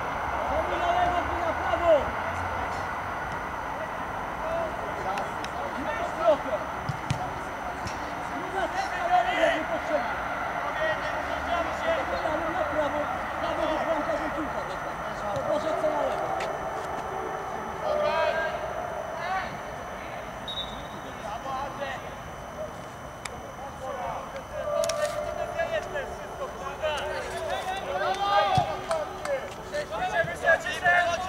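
Men's voices calling and shouting across a football pitch during play, with a few short sharp knocks.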